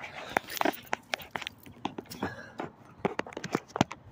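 Handling noise from a phone being moved and set down on concrete: irregular clicks, knocks and scraping on the microphone, with the loudest knock near the end.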